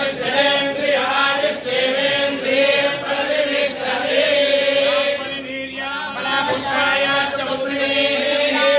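Hindu priests chanting mantras together in a steady, continuous recitation, a ritual blessing.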